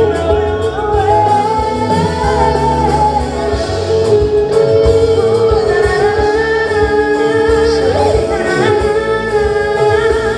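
A woman singing lead into a microphone, accompanied by a live band.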